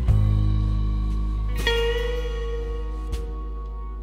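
Slow electric blues music: a band chord rings out and slowly fades, and a single held guitar note comes in about halfway through, with a couple of light percussive hits.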